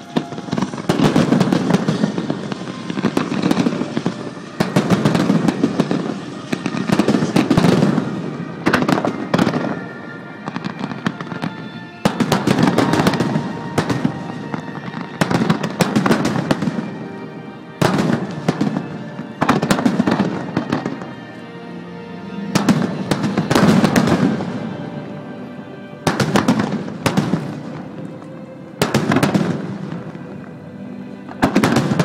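Aerial fireworks display: shells bursting one after another every second or two, sharp bangs with crackle, over music playing along.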